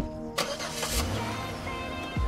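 A sharp click, then a car engine starting: a short burst of noise, then a low engine rumble from about a second in, under sustained film-score music.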